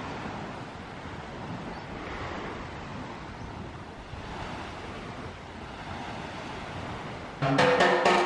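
Sea waves washing onto a beach: a steady rushing that swells and eases. Background music with a beat comes in loudly near the end.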